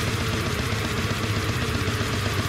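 Death metal band playing an instrumental passage: distorted guitars over fast, driving drums with rapid, even bass-drum strokes, no vocals.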